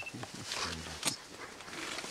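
Plant stems snapping and leaves rustling as a young mountain gorilla pulls at vegetation, with a short low grunt a little past the middle.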